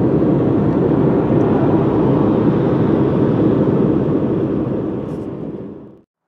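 Steady road noise of a moving car: a low, even rumble of tyres, engine and rushing air, fading out over the last second or so.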